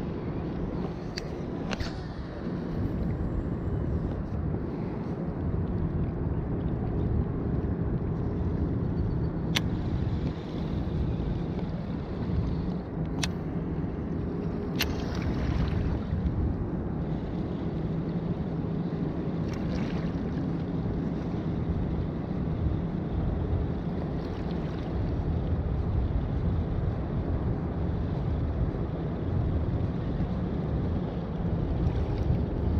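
Wind rumbling steadily on the microphone, with water washing against shoreline rocks, broken by a few sharp clicks.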